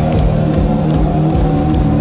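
Live heavy metal band playing loudly through a concert PA: distorted electric guitars holding notes over bass, with cymbal hits from the drum kit.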